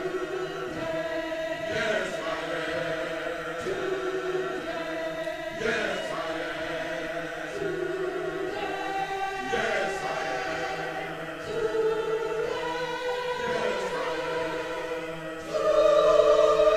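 Mixed choir of men and women singing a spiritual in slow, held phrases, getting louder near the end.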